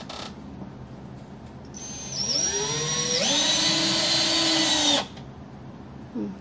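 Cordless drill working overhead in the ceiling framing. Its motor whine rises in pitch as the trigger is squeezed, holds steady for a couple of seconds, then stops abruptly.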